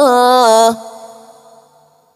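A man's voice in tilawah, melodic Qur'an recitation, holding a long sung note with a wavering, ornamented pitch. It stops abruptly under a second in, and its echo dies away to silence.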